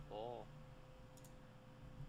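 Quiet room with a brief hummed murmur near the start and a couple of faint computer-mouse clicks about a second in, over a faint steady tone.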